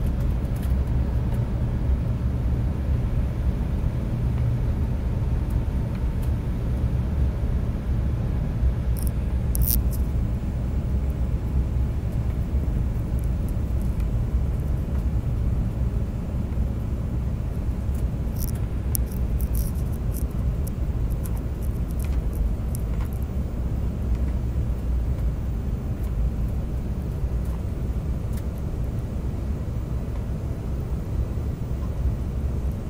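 Steady low rumble of an airliner's engines and airflow heard inside the passenger cabin as the plane descends to land. A few faint high ticks come through about a third of the way in and again past the middle.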